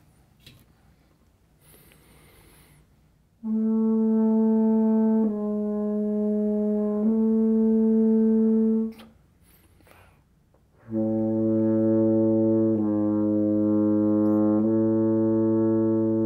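French horn (double horn) played with breath attacks, no tongue, in a note-tasting accuracy exercise. After an intake of breath come three joined, sustained notes of about two seconds each, then another breath and three more, about an octave lower.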